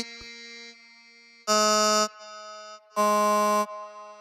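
Logic Pro Flex Pitch reference tone: a buzzy synthesized note that plays while a pitch segment is clicked and held, giving the pitch of that part of the vocal. It sounds loudly twice, each time for about half a second, with fainter steady tones between.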